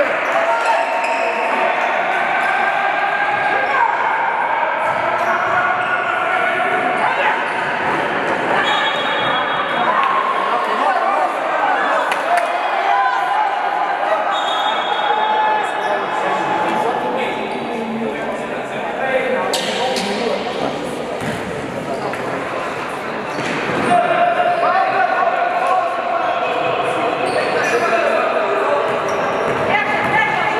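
Basketball game in an echoing sports hall: a basketball bouncing on the court floor amid voices and shouts from players and spectators, with short high squeaks. A sharp bang comes about two-thirds of the way through.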